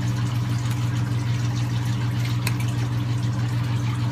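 Steady low hum with a wash of running water from aquarium sump equipment, and one faint click about halfway through.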